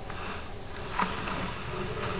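A young pet sniffing close to the microphone, with a sharp click about a second in.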